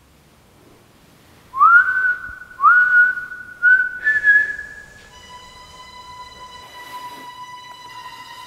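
Whistling: three short notes about a second apart, each swooping upward, then a slightly higher note held for about a second. A quieter steady tone with overtones follows and holds on.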